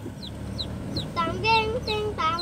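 Chickens riding in the car, young Burmese-cross birds and a Bangkok hen, calling: a run of short, high, falling chirps, joined about a second in by longer clucks that waver in pitch.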